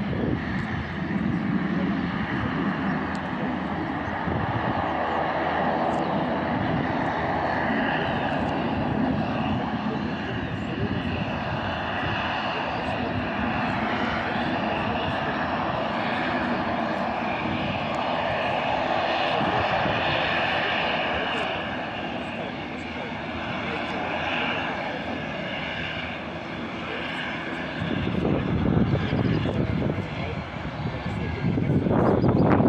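Airbus A320 airliner's jet engines heard from a distance on final approach, a steady whine and rush; a deeper rumble rises near the end as the plane reaches the runway.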